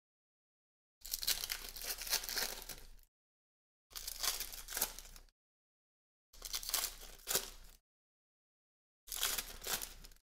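Wrappers of 2021 Donruss baseball card packs being torn open and crinkled by hand, in four crackly bursts of one to two seconds each with silence between them.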